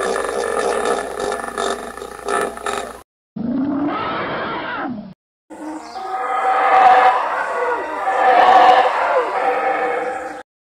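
Roar-like animal calls edited together as imagined calls of Glossotherium, an extinct giant ground sloth. Three separate calls are cut apart by brief dead silences: one ends about three seconds in, a shorter call dips low in pitch and then rises, and a longer, louder roar begins about halfway through.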